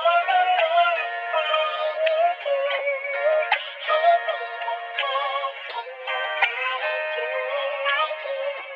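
Music: a chopped, pitch-shifted vocal sample playing as a loop, thin and midrange-only with no bass, with a few abrupt cuts between chops.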